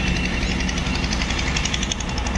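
An engine running steadily, with an even, fast low pulse.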